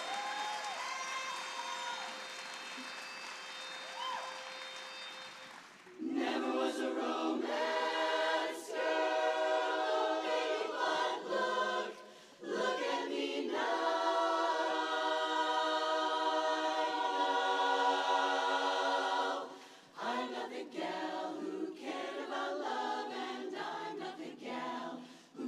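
Women's barbershop chorus singing a cappella in close four-part harmony. It sings softly at first, comes in loud about six seconds in, and holds a long chord in the middle, with brief breaks about twelve and twenty seconds in.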